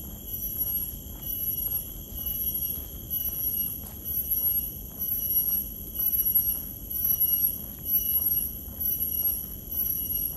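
A steady, shrill chorus of insects holding several high pitches at once. Faint footsteps fall about twice a second underneath it.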